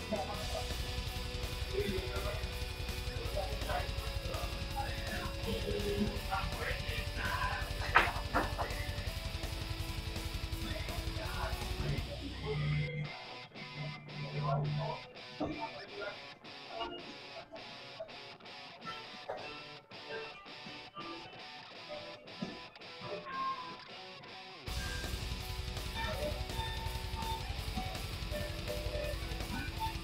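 Background rock music with electric guitar and the murmur of voices in a pool hall. One sharp click stands out about eight seconds in.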